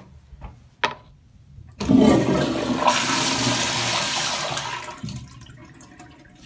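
Tankless commercial toilet flushing. A sharp click a little under a second in, then a sudden loud rush of water for about three seconds that fades away near the end.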